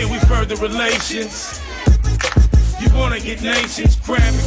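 Live hip-hop: a rapper rapping into a microphone over a beat with heavy bass kick-drum hits, played loud through a club sound system.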